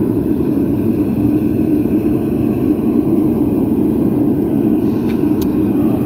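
Gas-fired melting foundry's two burners running steadily, a loud low rush of flame, while brass and aluminium melt together in the crucible.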